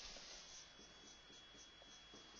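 Faint strokes of a marker pen writing on a whiteboard, with a thin steady high whine underneath.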